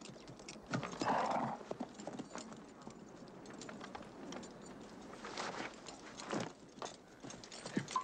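Horses walking, their hooves clip-clopping in an uneven, unhurried rhythm.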